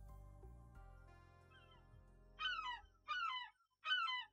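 Soft background music fading out, then three short falling cries of seagulls in the second half, about three-quarters of a second apart.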